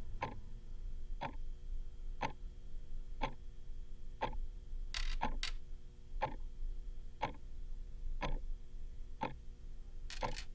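A clock ticking steadily, about one tick a second, over a faint steady hum. A brief rustle and a sharp click come about halfway through.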